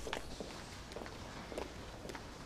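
Quiet footsteps of shoes on a hard corridor floor, a few separate steps over a low, steady room hum.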